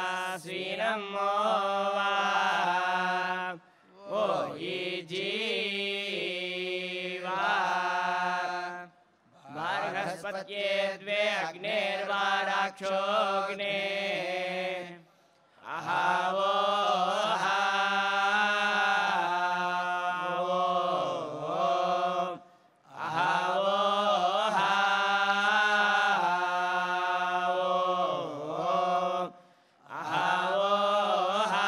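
Male Vedic reciters chanting into microphones: long held notes that bend up and down in pitch, in phrases broken by short breath pauses every five to seven seconds.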